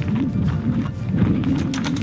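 Wind buffeting the microphone, an uneven low noise.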